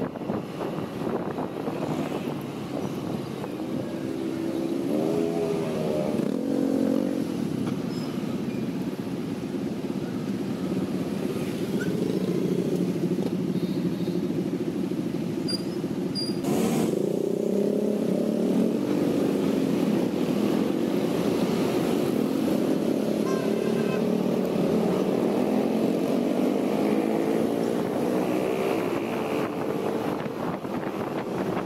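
Honda ADV 160 scooter's single-cylinder engine running while riding in traffic. Its pitch rises as it speeds up about five seconds in, and again over the second half, over road and wind noise. A single sharp click comes about halfway through.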